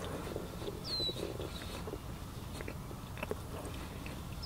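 Close-miked chewing of cauliflower-crust pizza: soft irregular mouth clicks and crackle. About a second in, a bird gives one short downslurred whistle.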